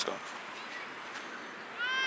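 A single short high-pitched animal call near the end, rising then falling in pitch.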